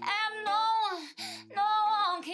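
A woman singing two short phrases, the first ending in a falling note, over strummed acoustic guitar chords.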